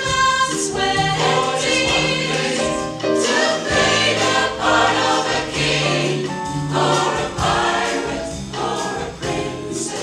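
Mixed choir of women's and men's voices singing a song in harmony, with low sustained notes under the upper parts.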